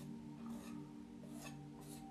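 Palette knife scraping oil paint onto a canvas in a few short strokes, laying on snow, over soft background music.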